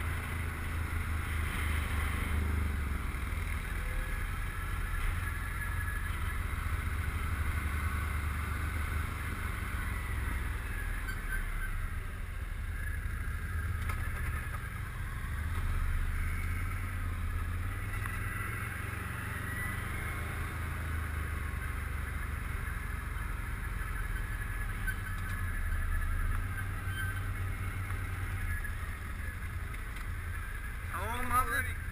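Can-Am Outlander ATV engine running at low riding speed, with a steady low drone that rises and eases a few times with the throttle.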